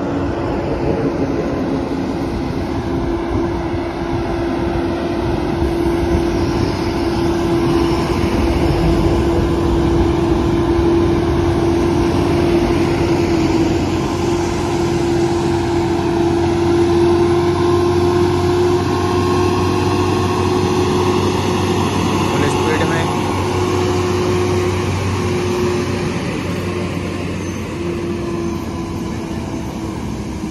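Volvo FM 400 heavy-haul truck's diesel engine running under load at crawling speed, a steady drone with a constant hum, hauling a transformer on a multi-axle trailer. It grows louder over the first several seconds as the truck approaches, then holds steady.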